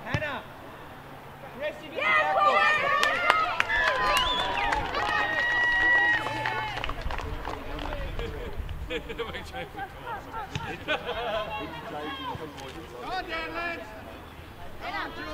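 A rugby ball drop-kicked once, a single thud right at the start, followed by high-pitched voices shouting and calling across the field, loudest for a few seconds after the kick and then fading to scattered calls.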